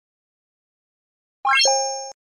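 Silence, then an electronic chime sound effect from a like-and-subscribe end-screen animation, about a second and a half in. A quick upward run of notes ends in a held, fading tone that cuts off abruptly after about half a second.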